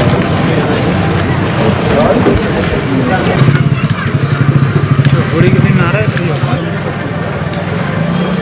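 Busy street sound: people's voices talking over a running motor vehicle engine, with a fast throb that is strongest from about three and a half to six seconds in.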